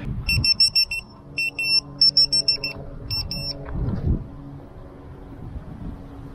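ViFLY Beacon lost-model alarm buzzer beeping rapidly in short bursts of high-pitched beeps, set off by its movement-triggered anti-theft ("stealing") mode as it is picked up and tossed. The beeps stop about three and a half seconds in.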